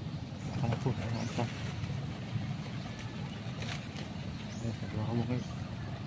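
Steady low hum with a few short clicks in the first half and a brief faint voice about five seconds in.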